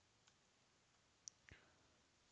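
Near silence with three faint, sharp clicks, the last two close together about a second and a half in.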